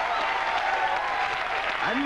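Studio audience applauding, with voices shouting over the clapping.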